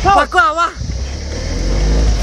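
A small pickup truck's engine running with a low rumble and rising in pitch as it revs up to pull away, after a brief voice at the start.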